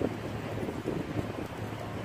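Steady wind noise on the microphone, with a faint low hum underneath.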